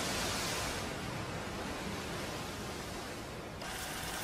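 Steady rushing hiss of wind and sea that slowly fades, with a brighter shift in the noise just before the end.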